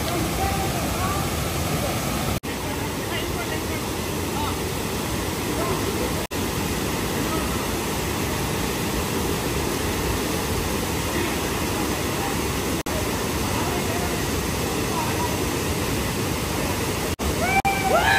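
Steady rush of a small waterfall pouring into a pool, with faint shouts and voices of people in the water.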